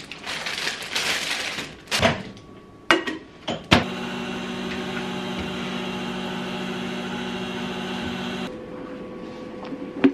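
Packaging rustling and a few clicks, then a microwave oven running with a steady hum for about five seconds that cuts off suddenly.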